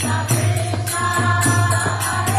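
Devotional chanting: a man's voice singing a mantra, with small hand cymbals (karatalas) struck in a steady rhythm and a two-headed mridanga drum played along.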